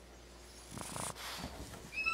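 A small Boston terrier snuffling and snorting, a few short noisy breaths starting just under a second in.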